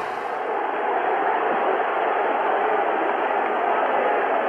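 Large stadium crowd making a steady roar of many voices.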